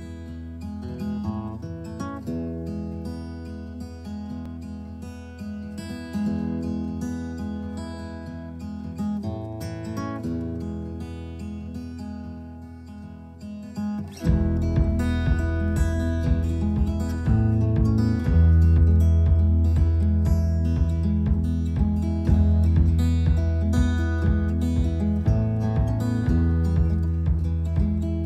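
Background music led by acoustic guitar, which gets suddenly louder and fuller in the low end about halfway through.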